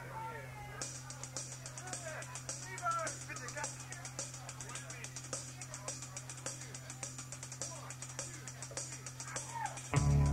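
Live rock band between songs: a steady amplifier hum, scattered voices, and a light, even ticking on the drummer's cymbals from about a second in. The full band comes in loudly right at the end.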